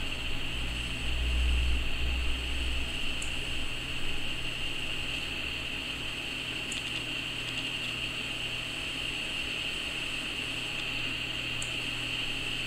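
Steady background noise of a small room: a constant hiss over a low hum, with a deeper rumble for the first few seconds and a few faint ticks.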